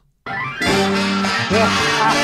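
Live Latin dance band music that starts abruptly about a quarter of a second in, after a moment of silence, and plays on steadily.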